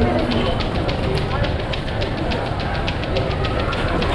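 Nasi goreng being stir-fried in a wok: a metal spatula clatters against the wok several times a second over a steady frying hiss.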